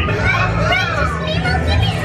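Children's voices chattering and calling out in high, excited tones, no words clear.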